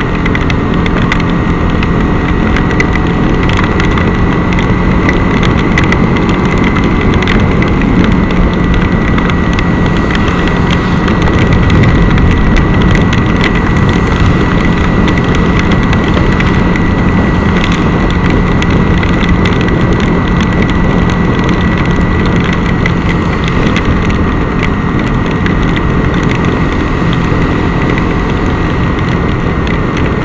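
Motorcycle engine running at a steady cruise on a wet road, under a constant rush of wind and tyre spray, with a steady drone and a thin whine held throughout.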